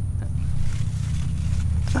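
A steady, low mechanical hum runs throughout with no change in pitch or level.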